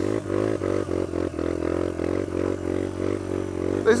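Sinnis Apache 125's single-cylinder engine with a D.E.P aftermarket exhaust, held under throttle in a steady, slightly wavering note as the rear tyre spins and slides in loose sand.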